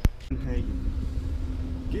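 Steady low rumble and hum inside a parked vehicle's cabin with the engine running, after a sharp click at the very start.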